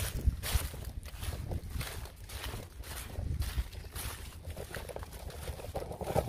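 Footsteps rustling and crackling through dry grass and matted water-hyacinth stems, irregular and several a second, over a low rumble on the microphone.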